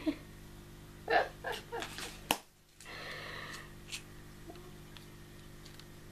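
A woman's short breathy laughs, then a sharp click of a clear plastic box lid being handled, over a steady low hum.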